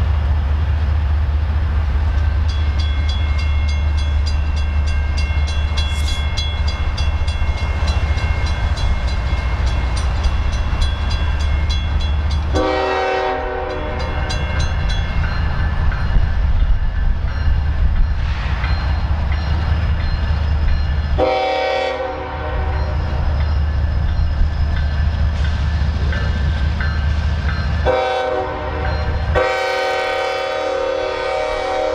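Diesel freight locomotive approaching with a steady low engine rumble, sounding its multi-chime air horn in the grade-crossing pattern: two long blasts, a short one, then a long one that runs past the end. Before the horn, a bell rings rapidly for about ten seconds.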